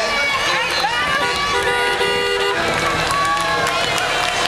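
Crowd of parade spectators cheering and shouting, many voices overlapping.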